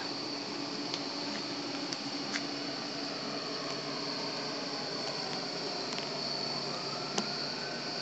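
Distant emergency siren wailing faintly, its pitch sliding down and then climbing again near the end, over a steady background hiss.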